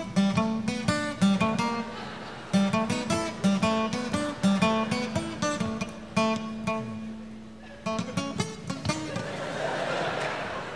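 Acoustic guitar picking a melody of single plucked notes over a held low bass note, with a brief pause about seven seconds in.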